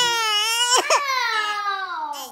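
An eight-week-old baby crying: one long wail that starts high and slowly falls in pitch, with a short catch about a second in. The baby is refusing the bottle, which the mother takes to mean she wants to breastfeed.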